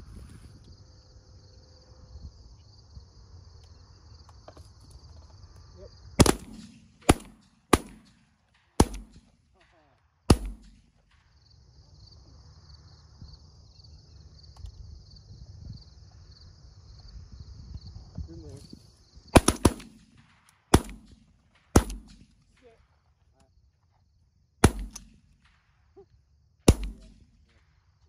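Shotguns firing at pigeons in two strings of sharp, loud shots: five in quick succession about six to ten seconds in, then about six more spread over the last third. A steady high-pitched buzz runs in the quiet stretches between the strings.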